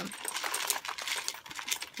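Small acrylic embellishments clicking and rattling against each other inside a plastic zip bag as it is handled, a quick, irregular run of light clicks.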